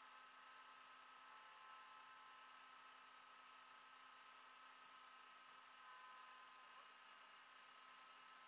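Near silence: a faint, steady hiss with a few faint, steady tones and no distinct events.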